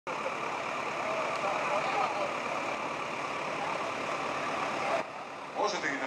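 Steady engine noise mixed with the chatter of many voices, which breaks off suddenly about five seconds in; a voice starts speaking just before the end.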